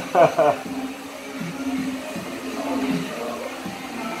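Background music and distant voices in a salon. Just after the start comes a short, loud two-part voice sound, the loudest thing here.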